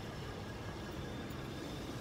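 Steady low outdoor rumble of background noise, without distinct events.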